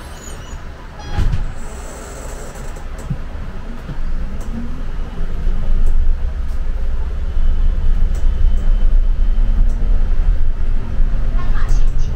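City bus driving, heard from inside: a low rumble of drivetrain and road that grows louder from about four seconds in as the bus picks up speed, with a short rising whine. A single knock about a second in.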